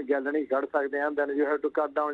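A man speaking over a telephone line in continuous talk, his voice thin and narrow in tone.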